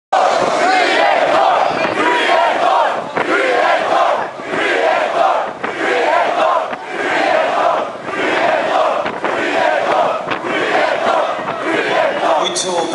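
Large concert crowd of thrash metal fans chanting and shouting together, the mass of voices swelling and dipping in a steady rhythm about once a second.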